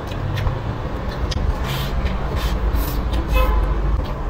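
Close-miked eating sounds: chewing braised pork belly and rice, with scattered wet mouth clicks and a heavy low rumble. A brief steady tone sounds a little over three seconds in.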